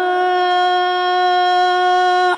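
A muezzin's voice singing the adhan, the Islamic call to prayer, holding one long steady note after a wavering, ornamented run.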